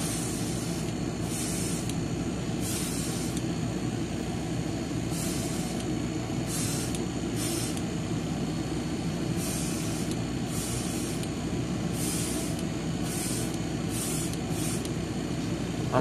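Airbrush spraying green paint in a dozen or so short hissing bursts of under a second each, light passes that build the colour up slowly on small model-car mirror parts. A steady low hum runs underneath.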